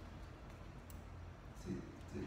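Quiet room tone with a steady low hum, a faint click about a second in and a brief low murmur near the end.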